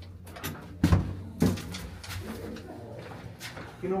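Manual elevator landing door being pulled open by hand beside a folded brass scissor gate: a sharp metallic clack about a second in and another half a second later.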